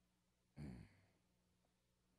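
A man's short sigh close to a headset microphone, about half a second in; otherwise near silence.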